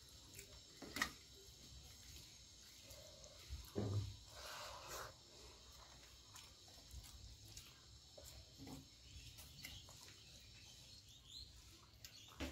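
Faint hand-eating sounds: fingers mixing rice and curry on a steel plate, with scattered small clicks and mouth smacks. A sharper click comes about one second in and a louder thump around four seconds.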